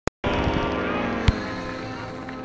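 Model airplane engine running steadily, slowly fading, with a sharp click a little over a second in.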